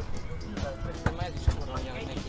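Roti dough being slapped and worked by hand on a steel counter, with two dull thumps about a second and a second and a half in.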